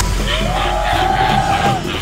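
Background music from a TV edit: one long pitched note that slides up, holds, and falls away near the end, over a repeating beat.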